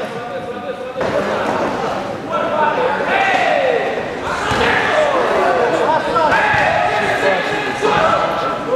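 Several people shouting over one another, loud calls with sharply falling pitch, in a large arena hall, with a thud or two of blows landing in the ring.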